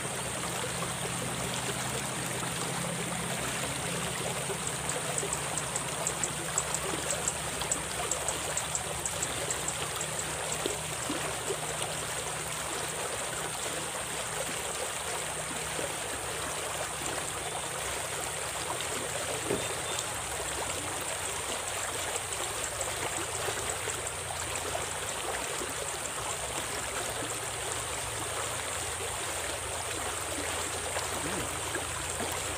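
Small shallow stream rushing and splashing steadily over its bed, a constant watery rush. A run of rapid high ticks rides over it from about five seconds in, lasting several seconds.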